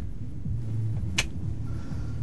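A single sharp finger snap about a second in, the signal to breathe in the smoke, over a steady low background hum.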